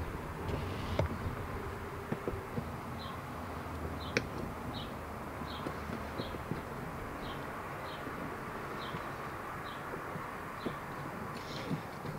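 A few light plastic clicks as a handle's lock housing is fitted and held against a door, over a quiet background with a steady run of short, high chirps about one and a half a second apart.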